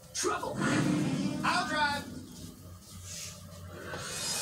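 Two short, indistinct vocal sounds, one near the start and one about a second and a half in, followed by quieter room sound.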